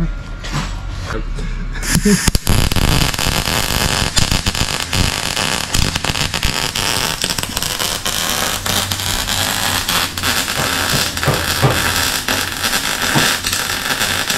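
MIG welder arc crackling steadily as it lays a weld on a car door's sheet steel, starting about two seconds in after a few separate clicks.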